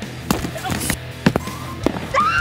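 Packed fake snowballs made of baking soda and shaving cream striking cardboard boxes: three sharp thuds, about a second in and near the end, over background music.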